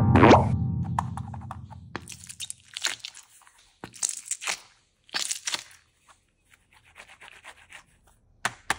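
A mesh stress ball filled with gel beads squeezed in the hand: squelching, crackly squeezes in several bursts about a second apart, fading to faint crackles near the end. At the start a musical run ends in a springy sound effect that dies away.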